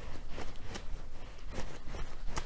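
Soft, irregular clicks and taps of playing cards being handled and drawn, over a low steady hum.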